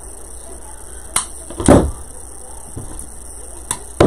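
Hand pruners snipping pine greenery: a few separate sharp clicks, about a second in and near the end, with one louder thump and rustle in between.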